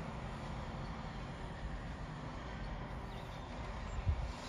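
Tractor engine running steadily as it pulls a seed drill through the field, a low, even rumble.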